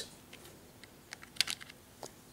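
A handful of light clicks and taps of plastic LEGO pieces being picked up and handled, mostly in the second half.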